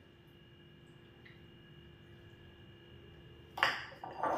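Quiet kitchen room tone with a faint steady hum. About three and a half seconds in comes a short, sharp clatter as a small cup is set down into a bowl.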